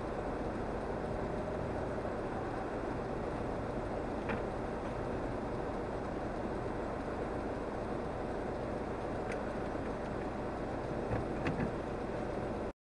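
Steady low rumble of a car's engine and cabin as it creeps along in queuing traffic at walking pace, heard from inside the car. A few faint clicks sound in the second half.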